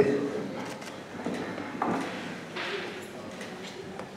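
Quiet, broken-up speech: a few short words near the start, then pauses with a couple of brief soft sounds.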